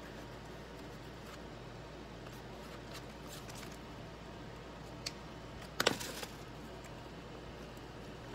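A light click about five seconds in, then a short clatter just before six seconds, as a distress crayon is set down on the craft table. A steady low room hum lies underneath.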